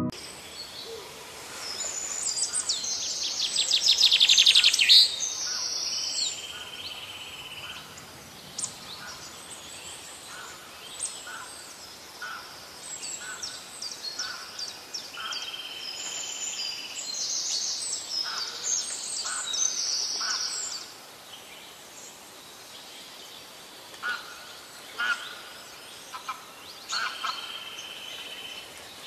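Birds chirping and twittering in bursts of rapid high calls and trills, loudest a few seconds in and again about two-thirds of the way through, with scattered single chirps between.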